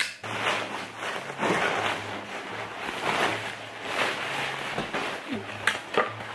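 Packaging rustling and scraping in a run of uneven swishes as a blender's plastic pitcher is lifted out of its box, with a few sharp clicks of hard plastic near the end.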